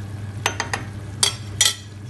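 Several short clinks and taps of kitchen utensils against dishes: three light ones close together about half a second in, then two louder ones near the middle and end. A steady low hum runs underneath.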